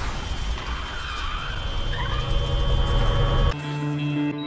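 Car engine rumbling low, with faint music underneath. The rumble cuts off suddenly about three and a half seconds in, leaving the music.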